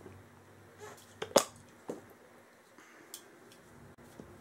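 A few sharp clicks and knocks of hard objects being handled and set down on a plastic tabletop. The loudest knock comes about a second and a half in.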